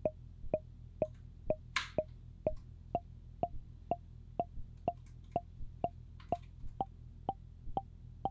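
Intellijel Plonk physical-modelling percussion synth playing a steady run of short struck notes, about three to four a second. Its pitch steps up by semitones as the Teletype's CV output is set to higher equal-temperament note numbers.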